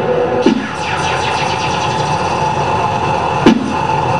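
Loud experimental noise music: a dense, steady wall of electronic noise and held drones. Two sharp cracks cut through it, about half a second in and near the end, each followed by a short falling low swoop.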